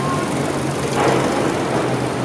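Steady outdoor background noise with an even low hum; no single sound stands out.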